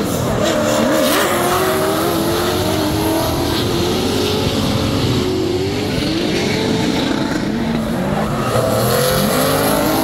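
Drift car engines revving hard through a corner, the pitch repeatedly rising and falling as the throttle is worked, over loud tyre noise and squeal from the sliding tyres.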